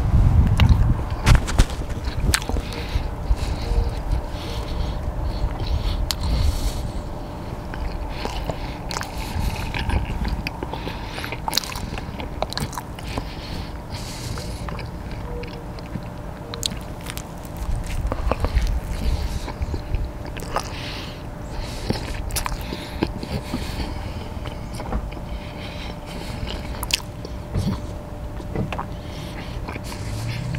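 Close-miked eating of Popeyes fried chicken and fries: bites and chewing with many small sharp mouth clicks and crackles over uneven low thuds, heaviest around the first second and again around eighteen seconds in.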